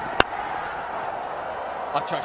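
Cricket bat striking the ball once, a single sharp crack as the batter drives it down the ground, over a steady murmur of the stadium crowd.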